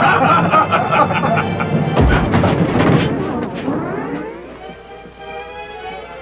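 Several men laughing together, cut off about two seconds in by a heavy thud as the elevator jolts to a halt and gets stuck. A held note then rises and hangs on, quieter.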